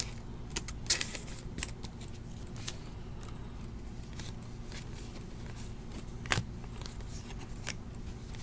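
Trading cards being handled and flipped through by hand, with a clear plastic card sleeve: a scatter of short sharp flicks and snaps of card stock and plastic, loudest about a second in and again near six seconds, over a steady low hum.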